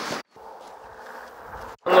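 Quiet outdoor background noise with a faint steady hum, set between two abrupt edit cuts; a voice ends a question just before it and says a short word after it.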